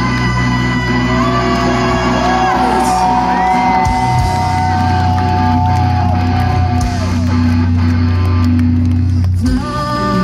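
Live rock band playing loud through a festival PA, recorded from the crowd: held notes that slide in pitch over steady low bass, with a brief drop near the end before the next section starts.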